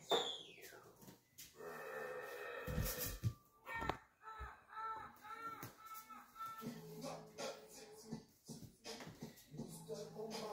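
Audio of a funny-video compilation playing from a TV across the room: people's voices and a run of short repeated animal cries, with a few low thumps about three seconds in.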